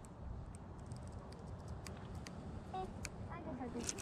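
Low, steady rumbling noise on an open boat, with scattered light clicks. A faint voice comes in near the end.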